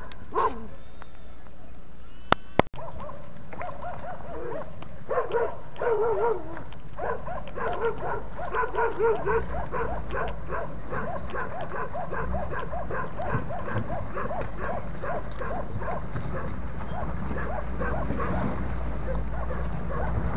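A dog barking over and over in quick runs of barks that grow fainter near the end, over a low vehicle-engine rumble that comes up in the second half. Two sharp clicks sound about two and a half seconds in.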